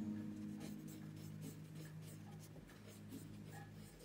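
Mechanical pencil scratching across paper in short, irregular strokes as it draws a wavy line. Beneath it, low held tones fade away.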